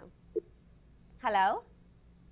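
A single spoken 'hello' a little past halfway, preceded by a brief short blip; otherwise only a faint steady low hum.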